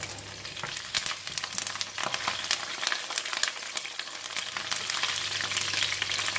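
Fresh curry leaves and whole spices frying in hot oil in a stainless steel wok: a steady sizzle full of many sharp crackling pops as the leaves spit in the oil.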